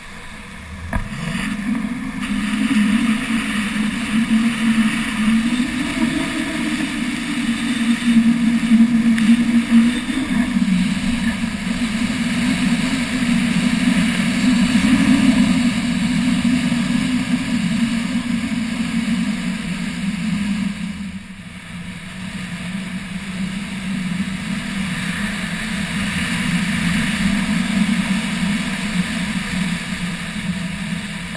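Skis running fast on hard, groomed snow with air rushing past the camera: a loud, steady low hum and hiss that swells about a second in as speed builds, eases briefly around two-thirds of the way through, then carries on.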